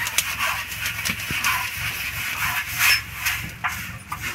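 Rice grains being stirred and swept around a hot clay pot with a bundle of thin sticks during puffed-rice roasting: a scratchy rustle full of small crackles, over a low steady hum.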